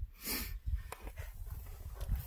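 A person sniffling through the nose from the cold: one sharp sniff about half a second in, then a few fainter ones.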